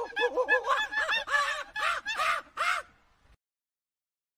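Monkey chattering: a rapid run of rising-and-falling calls, about five a second, growing harsher before stopping about three seconds in.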